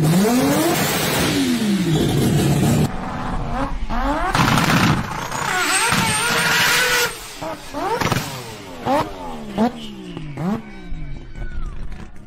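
Mazda 20B three-rotor turbocharged rotary engine revving hard, its pitch sweeping up and down. Later comes a string of short, sharp revs, each rising quickly in pitch.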